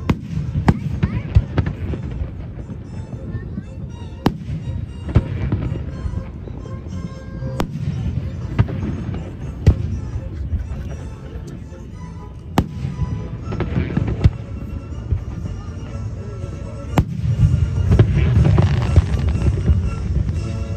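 Fireworks shells bursting overhead, a sharp bang every second or two at irregular intervals over a low rumble.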